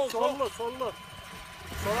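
Suzuki Jimny's engine running at low revs as it crawls up a steep rutted dirt slope. It swells louder near the end as the driver gives it more throttle.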